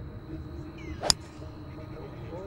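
A golf club striking a golf ball in a full swing: one sharp, loud crack about a second in.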